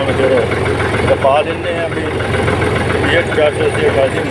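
Fiat 480 tractor's three-cylinder diesel engine running steadily as it drives, heard from the driver's seat. A person's voice comes and goes over it.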